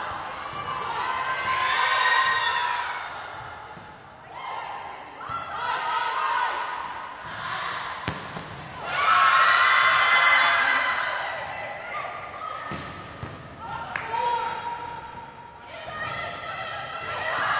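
Volleyball players shouting and cheering in a gym, with a few sharp smacks of the volleyball being hit during the rallies.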